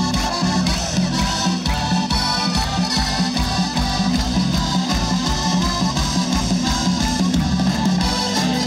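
Alpine rock band playing live: accordion, electric guitars, bass guitar and drums over a steady beat.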